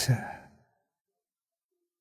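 A man's voice finishing a spoken word and trailing off within the first half second, followed by near silence.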